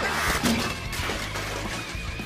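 A cartoon blast effect: an energy beam strikes with a sudden crashing burst at the start that fades over about half a second, over continuing music.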